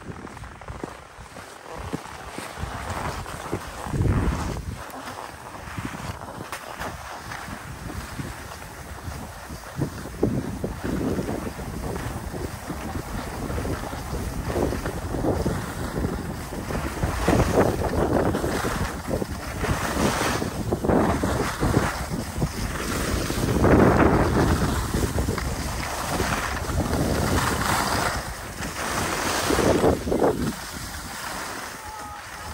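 Wind rushing over the microphone of a camera carried by a moving skier, with skis sliding and scraping on packed snow. The rushing comes in swells and grows louder through the second half.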